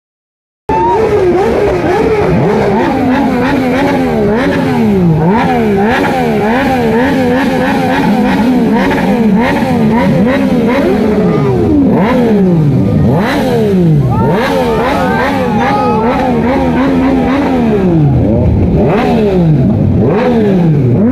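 Motorcycle engines revved hard while standing, more than one at once: the pitch climbs and drops in quick throttle blips, about one to two a second, and at times is held high for a second or two before falling away.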